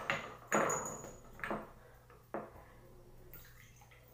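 Bathwater splashing and a glass perfume bottle set down and handled on the bathtub's edge: three sudden knocks and splashes about a second apart, the first with a short high glassy ring.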